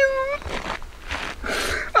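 A man's drawn-out, whining word trails off, followed by breathy sighing and exhaling.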